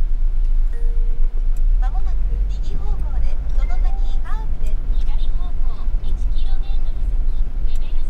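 Steady low rumble of a camper van driving slowly on a wet road, heard inside the cabin. A faint voice talks in the background.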